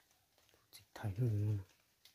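A man's voice saying a short word about a second in.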